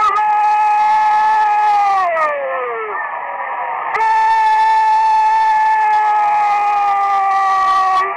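A football commentator's long drawn-out goal shout in Spanish. One held, high-pitched yell slides down and fades out about two to three seconds in, then a second long held note runs on after a short breath.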